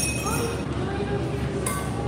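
Metal cutlery clinking against a plate twice, once at the start and once near the end, each clink ringing briefly.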